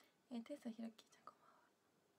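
A woman speaking a short, quiet phrase in Japanese, lasting under a second.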